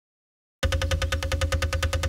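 Woodpecker drumming sound effect on a timber-look aluminium door: a rapid, evenly spaced roll of knocks, more than a dozen a second, with a steady ringing tone under it, starting about half a second in after silence.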